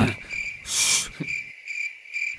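Cricket chirping, a steady high trill, laid over a studio silence as a comedy sound effect. A short 'shh' hiss comes about half a second in.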